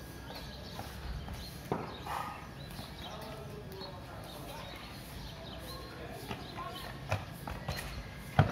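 Faint, distant voices with a sharp knock a little under two seconds in, and several lighter clicks and knocks near the end.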